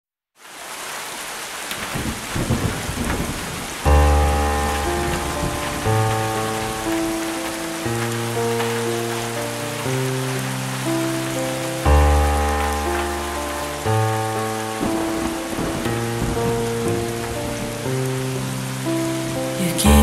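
Song intro: a steady rain sound, joined about four seconds in by slow, held keyboard chords over deep bass notes that change every one to two seconds.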